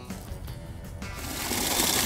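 Water from a garden hose running into a plastic bucket, starting about a second in as a steady hiss, under background music.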